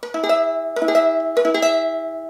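Ukulele strummed a few times on an E major barre chord, barred at the fourth fret with the seventh fret on the first string, the chord ringing on between strums.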